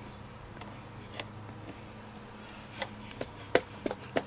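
A few faint, sharp taps of a small clear-block rubber stamp being dabbed onto an ink pad, over a low steady hum.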